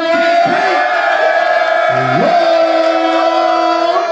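Voices holding long drawn-out shouted notes over a crowd. One high shout carries on steadily, and a second, lower voice slides up to join it about halfway through and holds.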